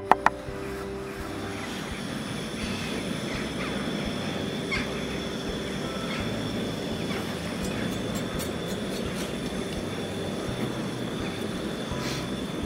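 Portable gas cartridge stove burner running under a pan of simmering liquid, a steady even rush of noise with a faint high tone and the odd small tick.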